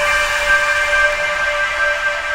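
Ambient relaxation music: a held chord of several steady tones over an airy hiss, with no rhythm or change in pitch.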